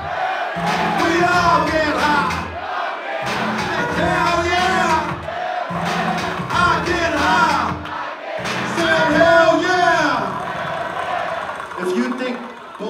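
Live hip-hop played loud over a club PA: a heavy bass beat that cuts out for a moment about every three seconds and drops away near the end, with the crowd shouting along.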